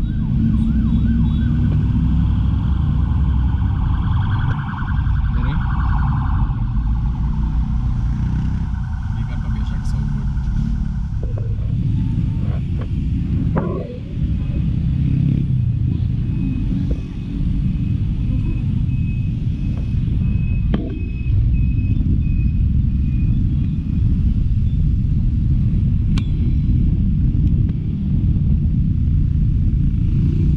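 Steady low rumble of a car driving along a city street, heard from inside the car. For about the first eleven seconds a steady higher-pitched sound rides on top of it.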